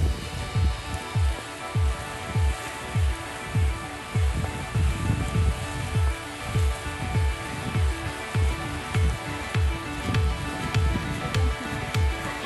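Background electronic music: a deep kick drum that drops in pitch on each beat, a little under two beats a second, under sustained synth chords.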